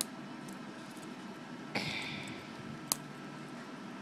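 A single sharp metal click about three seconds in as a Leatherman Micra keychain multi-tool is opened, after a short soft noise of handling a second earlier. Otherwise only a faint steady hiss.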